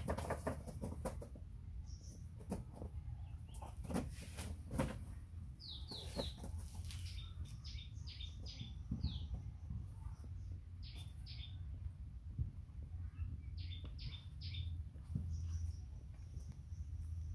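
Short, high chirps in quick groups of three or four from about five seconds in, with rustling and a few knocks in the first seconds over a low steady hum.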